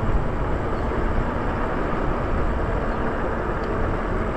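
Steady wind rush and road noise from riding a Lyric Graffiti fat-tire e-bike at an even speed on asphalt. The low rumble of wind on the microphone is the loudest part.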